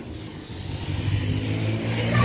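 A motor vehicle's engine running, the hum growing louder from about half a second in, as if approaching.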